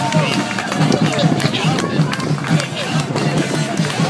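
College band playing with a steady low beat of about three to four pulses a second, over a crowd of fans talking and cheering.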